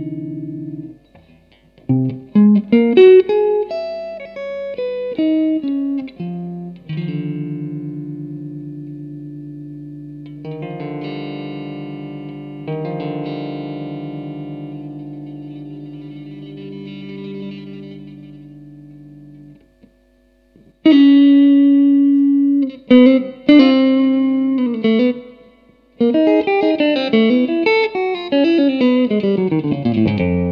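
Solo electric guitar played through an amplifier, improvising in single notes and chords. In the middle a chord is held ringing for about ten seconds. After a brief pause come short, sharp notes, and near the end a fast run falls in pitch.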